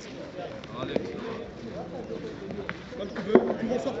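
Background voices of players talking, with a few sharp clicks of boules knocking together, the loudest a little over three seconds in.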